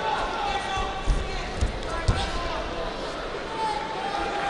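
Three dull thuds on a judo mat, about half a second apart, over shouting voices in a large hall.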